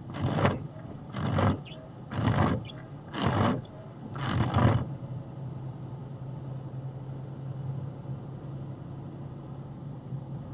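Box truck's windshield wipers swishing across the glass about once a second, five strokes, stopping about five seconds in. A steady low engine drone carries on in the cab.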